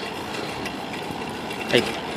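Steady rushing noise of riding a bicycle, wind and road noise on the microphone, with a few faint ticks; a voice starts near the end.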